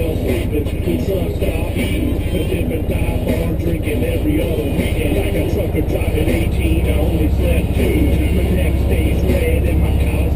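ATV engines idling, with a steady low engine sound that grows louder about six seconds in. A song with singing plays over it.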